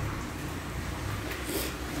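Low, steady background rumble with a few faint clicks and a brief scuff about one and a half seconds in: handling noise from a phone being carried while walking.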